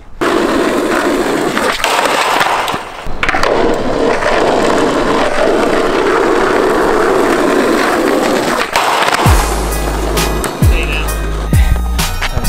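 Skateboard wheels rolling on rough asphalt, a steady coarse rumble with a short break about three seconds in. Background music with a beat comes in near the end.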